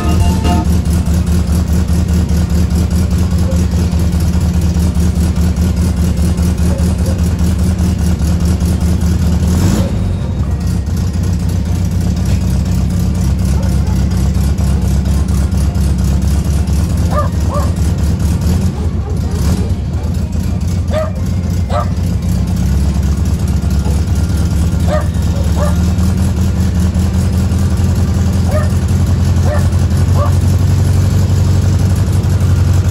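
VW Beetle's air-cooled flat-four engine running at a steady idle, its low note shifting about ten seconds in and again around nineteen seconds.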